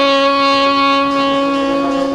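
Saxophone holding one long, steady note in a free-improvised jazz recording.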